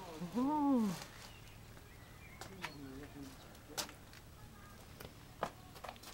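A person's short wordless hum that rises and then falls in pitch, about half a second in. It is followed by a few scattered light clicks and footsteps on a paved path.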